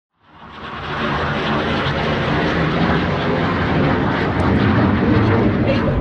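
Jet aircraft engine roar that fades in from silence and keeps growing slowly louder.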